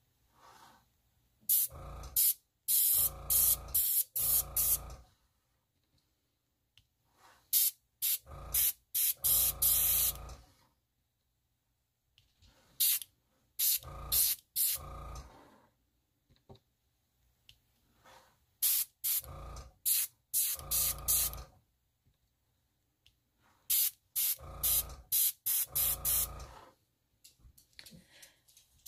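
Airbrush blowing short, sharp puffs of air onto wet alcohol ink. The puffs come in five clusters of several quick bursts each, with silent pauses between the clusters.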